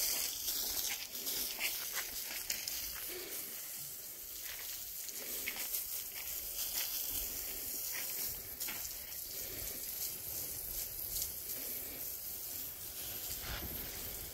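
Water from a hose spraying onto freshly laid concrete block walls to wet the new masonry and its still-damp mortar: a steady hiss of spray with irregular spatters against the blocks.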